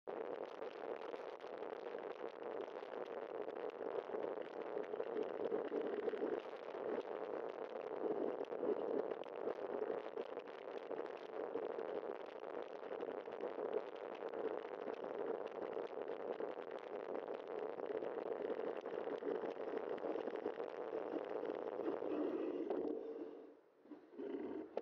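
Wind buffeting a bike-mounted camera's microphone while cycling, a steady rushing hiss with a constant flutter. It falls away suddenly near the end as the bike comes to a stop.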